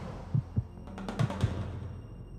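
Short musical logo sting: a series of deep drum thumps under a wash of sound, with a cluster of bright ticks about a second in, then a fading tail.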